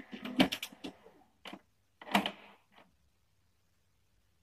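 HP LaserJet Pro 100 color MFP M175nw turning its toner cartridge carousel to the next position: a run of mechanical clicks and clacks, loudest about half a second in and again about two seconds in, stopping about three seconds in as the carousel settles.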